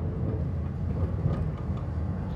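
Tram in motion heard from inside the passenger car: a steady low rumble of the car running along the rails.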